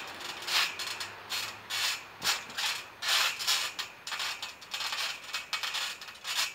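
Trampoline springs and mat creaking and rasping under a person's shifting weight, in irregular bursts about two a second.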